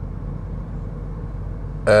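Steady low rumble of a car heard from inside the cabin, with a faint engine hum under it.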